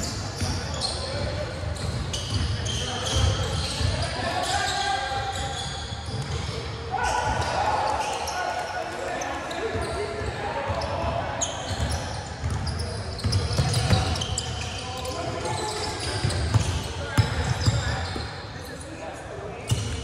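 Indoor basketball game on a hardwood court: a basketball bouncing on the floor, with several sharp thuds in the second half, and players' voices calling out, echoing in a large gym.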